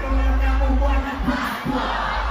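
Live concert through a festival PA: a performer calls out on the microphone over heavy bass from the band, with the crowd shouting.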